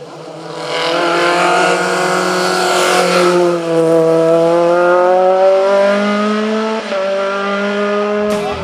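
The 1984 cc 20-valve four-cylinder engine of a VW Golf Mk3 hillclimb race car running hard as the car approaches, passes close and pulls away. Its note drops in pitch as it goes by, then climbs again as it accelerates, with a brief break about seven seconds in.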